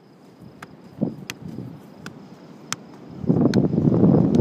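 Wind buffeting a phone microphone outdoors, swelling into a loud rumble about three seconds in. A few sharp, irregularly spaced taps come through it.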